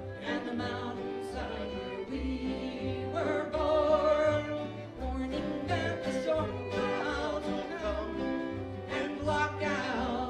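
Acoustic string band playing live: bowed fiddle over strummed acoustic guitars and a plucked upright bass walking through low notes.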